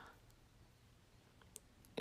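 Near silence: room tone in a pause in speech, with a faint click or two about a second and a half in.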